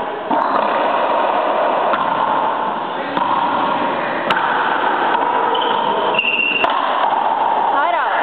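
Indistinct voices echoing around an enclosed racquetball court. Two sharp knocks come about two seconds apart in the second half, and there is a brief high squeak between them.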